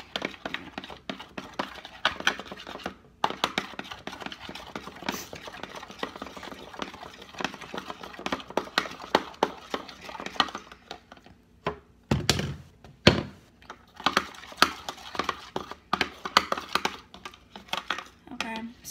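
A utensil stirring a wet slime mixture in a plastic bowl, a rapid, uneven run of clicks and scrapes against the bowl as freshly added shaving cream is worked in. Two heavier thumps come about two-thirds of the way through.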